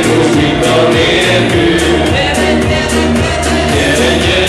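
A live dance band playing amplified music with singing over a steady beat.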